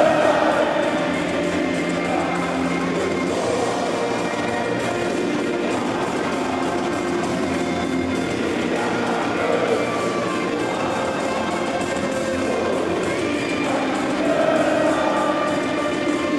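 Music playing at a steady level, with no breaks.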